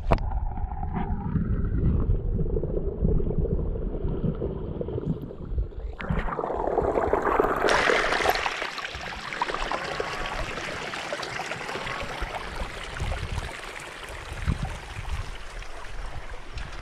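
Hot spring pond water heard through a submerged action camera: muffled gurgling with the highs cut off. About six to eight seconds in, the camera breaks the surface and the sound opens into water trickling and splashing over rocks at the waterline.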